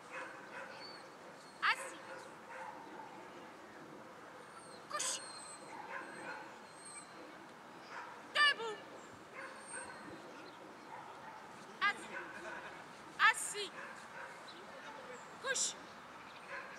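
A dog yelping and whining in short, sharp, high-pitched yips, about six of them a few seconds apart, the loudest near the middle and about three-quarters of the way in.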